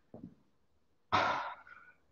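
A man's heavy out-breath close to the microphone, a single breath about a second in that fades over most of a second: breathing hard after exertion during a Tabata workout.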